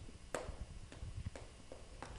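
Chalk writing on a blackboard: a series of faint, sharp taps and short scrapes as characters are written, the strongest tap about a third of a second in.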